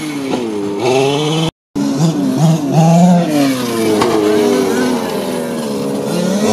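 King Motor X2 1/5-scale RC short-course truck's petrol two-stroke engine revving up and down as the truck is driven and jumped, its pitch rising and falling repeatedly. The sound drops out briefly about one and a half seconds in.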